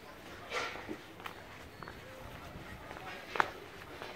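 Footsteps on a cobblestone street with people talking nearby. A sharp knock about three and a half seconds in is the loudest sound.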